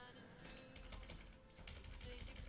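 Computer keyboard typing: a faint, quick run of keystrokes.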